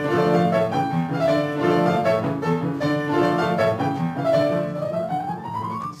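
Piano playing an instrumental interlude of a 1930s Italian music-hall song, a lively run of notes, with a long rising slide in pitch near the end.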